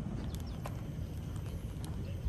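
Footsteps on composite decking boards: a few sharp taps at uneven spacing, over a steady low rumble of wind on the microphone.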